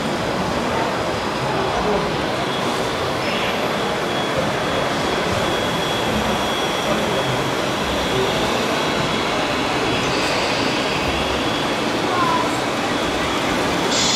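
A steady wash of background noise with indistinct voices in it, and a faint, thin, high steady whine running through it.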